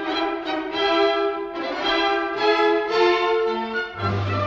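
Operetta orchestra playing the introduction to a song, strings carrying a melody over held chords, with notes changing about every half second to a second. A 1960 radio studio recording.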